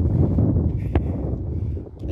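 Wind buffeting a phone's microphone outdoors: a low, steady rumble, with one short click about a second in.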